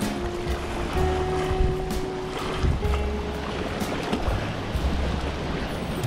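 Strong gusty wind buffeting the microphone over choppy lake water lapping at the shore, with background music playing a few held notes.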